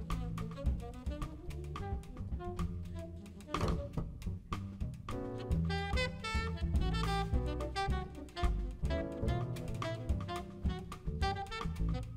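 A jazz band playing: a saxophone carries the melody over a plucked double bass walking in the low register, with a drum kit and cymbals.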